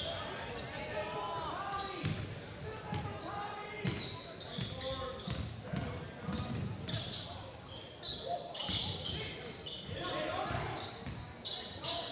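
A basketball being dribbled on a hardwood gym floor, a series of low thuds, with voices of players and spectators carrying through the large, echoing gym.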